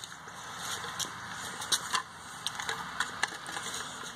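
Light handling clicks and rattles of a Lancer Tactical airsoft rifle as its battery is taken out, a few sharp clicks scattered through, over steady background noise.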